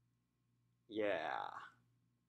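A man's voice saying a single drawn-out "yeah" about a second in, falling in pitch. Otherwise near silence.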